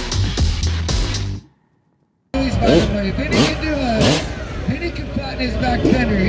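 Background music that cuts off about a second and a half in. After a short silent gap, live motorcycle stunt-show sound follows: an announcer over loudspeakers and a motorcycle engine revving up and down.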